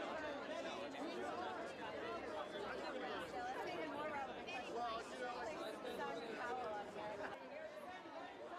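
Faint, indistinct chatter of several voices talking at once, with no single clear speaker.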